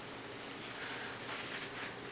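Steady low hiss of room tone with no distinct sound events; any rubbing of the brush on the tissue is not clearly heard.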